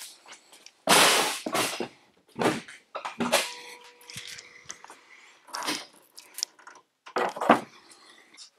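Car hood being unlatched and lifted open: a loud clunk and rattle about a second in, then several shorter knocks and handling noises, with a faint steady tone for a moment a little past three seconds in.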